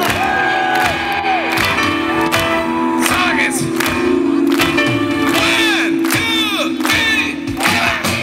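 A live band plays through an outdoor PA system with a held chord and a steady beat, while the crowd cheers and whoops over it. Many short rising-and-falling yells come up in the second half.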